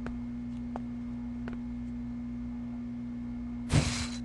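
A steady low hum tone with a few faint ticks, then a short loud burst of noise near the end.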